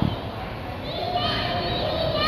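Children's voices and calls in an indoor swimming pool, over a steady wash of splashing from kids kicking with foam noodles. A short knock comes right at the start, and the high voices grow from about a second in.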